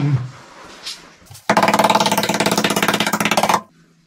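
A screwdriver scraping thick underseal off a Classic Mini's steel sill: a buzzing, chattering rasp with a pitch to it, about two seconds long, starting about a second and a half in and cutting off suddenly.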